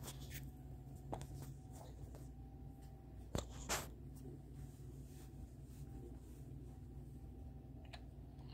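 Faint handling noises: a few light clicks and rustles as a small die-cast toy car is set on a display stand, the loudest two close together about three and a half seconds in.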